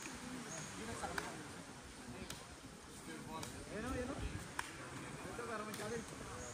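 Faint voices of several people talking and calling to one another at a distance. Short sharp clicks come about once a second.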